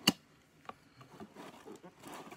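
Box cutter working on a cardboard shipping box: a sharp snap just after the start, a smaller click about half a second later, then faint scraping and rustling of cardboard.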